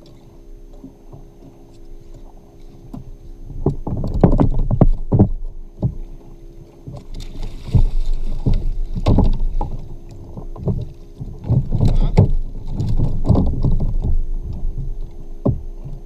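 Repeated knocks and thumps against a plastic fishing kayak as a yellowtail is gaffed alongside, with a burst of splashing about halfway through.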